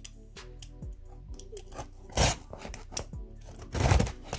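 Cardboard shipping box being opened by hand: scattered crackles and scrapes, with a louder tearing rip about two seconds in and another near the end, over faint background music.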